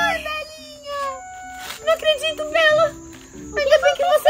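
Women and a girl making happy wordless vocal sounds, laughing and squealing in short bursts, over soft background music.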